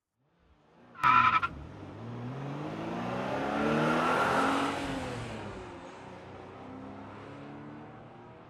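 Car sound effect under a logo card. A brief tyre squeal about a second in, then a car engine that rises in pitch and loudness to a peak about four seconds in and falls away again, like a fast car revving past.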